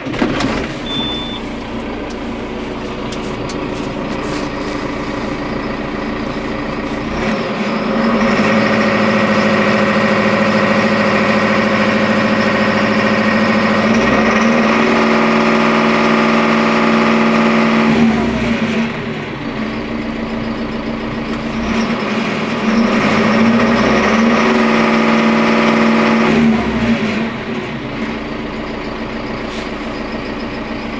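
The 2010 John Deere 7130 tractor's six-cylinder diesel engine is started with the key and catches straight away, heard from inside the cab. It settles into idle and is then revved up twice, about halfway through and again near the end, rising in pitch each time and dropping back to idle.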